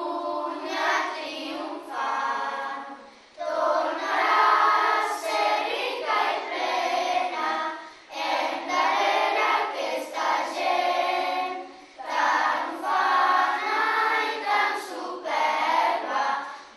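A group of school-age children singing together as a choir, in phrases of about four seconds with short breaks between them.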